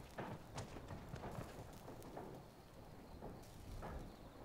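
Horse hooves clopping at a walk on hard ground: faint, irregular knocks.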